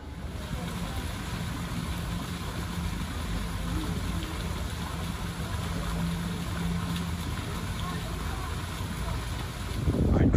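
Fountain jets splashing into a stone basin: a steady rush of falling water, with a faint low hum underneath.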